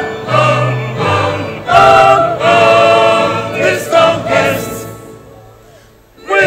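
Church choir singing an anthem in full harmony with organ accompaniment, in held sung phrases; about four and a half seconds in the phrase ends and the sound dies away to a brief quiet pause.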